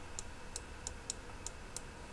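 Faint, light clicks, about three a second at slightly uneven spacing, over a low room hiss.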